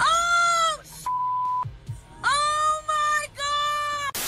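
High-pitched screaming in long held cries: one at the start and two more in the second half. A short steady beep sounds about a second in.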